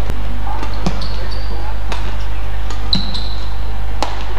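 Badminton court sounds: sharp knocks of rackets, shuttlecock and feet on the court, and short high squeaks of players' shoes on the court mat, the clearest about three seconds in, over a steady low hum.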